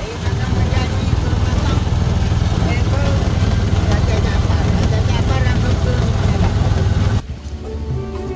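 Steady low rumble of riding in an open three-wheeled taxi along a paved path, with wind on the microphone and indistinct voices. About seven seconds in it cuts off abruptly to violin music.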